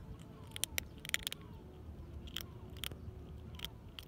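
Kitten chewing dry cat kibble: quick runs of sharp crunches in the first second and a half, then single crunches every half second or so.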